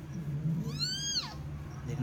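A newborn Persian kitten mews once about halfway in, a high, thin cry that rises and then falls in pitch.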